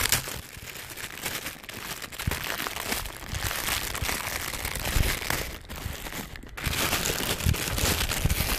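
Clear plastic bag holding a coiled cable crinkling irregularly as it is handled and pulled open, louder in the last second or so.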